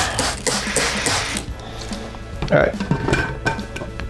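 A trigger spray bottle of Star San sanitiser spritzing a plastic jug lid several times in quick succession, followed by light clicks as the lid goes onto a glass gallon jug.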